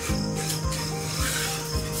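Cardboard rubbing and scraping as the top of a TV carton is worked open by hand, strongest in the second half, over steady background music.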